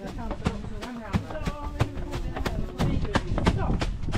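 People's voices over a steady knocking beat of about three sharp strikes a second.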